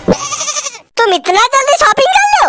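High-pitched cartoon character voices, with wavering, bleat-like pitch: a breathy stretch, a short break, then speech sliding up and down.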